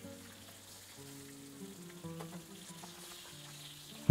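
Flour-dredged cod fillets frying in hot olive oil in a nonstick pan, a faint steady sizzle, with a few light clicks of a metal spoon and spatula against the pan about halfway through as the fillets are turned. Soft background music plays under it.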